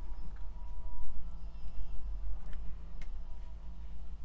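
A few faint, light ticks as a beading needle and thread are worked under a waxed cotton cord and through a stone bead, over a steady low hum.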